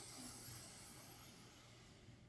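A slow, deep inhalation, faint: a soft hiss of air being drawn in that fades away over two seconds.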